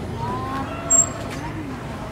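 Steady low rumble of background traffic, with a brief, sharp, high-pitched chirp about a second in.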